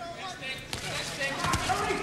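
Boxing-arena crowd murmur with a few sharp thumps from the ring, the loudest about a second and a half in.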